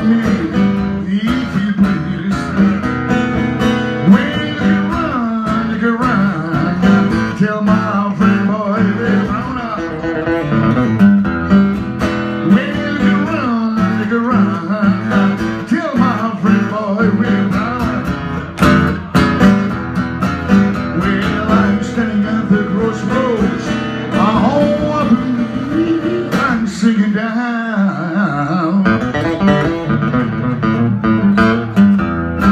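Live solo acoustic blues: a steel-string acoustic guitar played at a steady pace with a voice singing over it.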